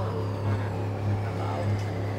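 A steady low hum from a running motor, holding level with a slight regular pulse.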